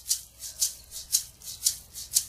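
Song intro: a shaker playing a steady rhythm alone, about four strokes a second, strong and lighter strokes alternating.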